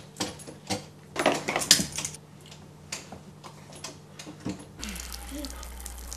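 Irregular metallic clinks and knocks of hand tools and pipe fittings being worked under a kitchen sink. About five seconds in, the clatter gives way to a steady low hum with a hiss.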